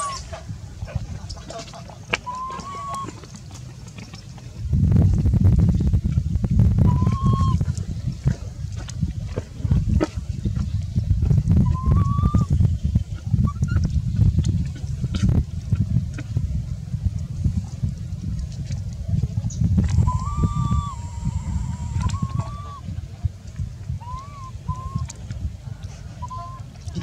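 Baby macaque giving short, high, rise-and-fall cooing cries every few seconds, several in quick succession near the end: the distress cries of an infant monkey. A low rumble runs underneath from about five seconds in.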